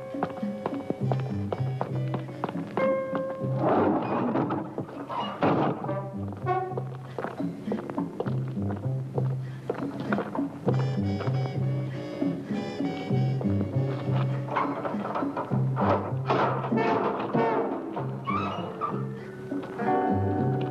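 Horror film score: a repeating low bass figure under held tones, with clusters of sharp percussive knocks.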